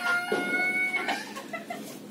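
A chicken calling: one held note for about a second, then a few faint short clucks.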